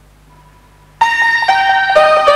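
Faint low hum, then about a second in the song's instrumental intro starts suddenly and loud, a run of keyboard notes with sharp attacks.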